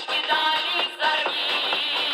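A live Russian folk song: women singing with accordion and balalaika accompaniment.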